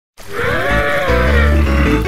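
Background music with bass notes, opened by one animal call that rises and then falls in pitch over about a second.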